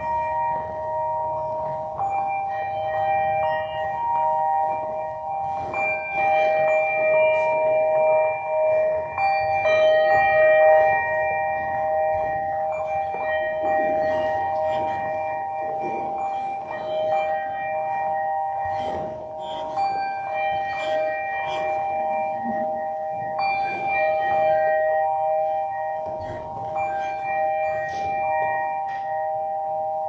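Pipe organ playing slow, sustained chords, its notes held for several seconds and changing one voice at a time.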